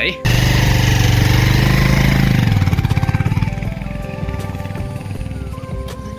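Motorcycle engine running loud and revving, then dropping off about three and a half seconds in as it pulls away. Background music with held notes plays underneath.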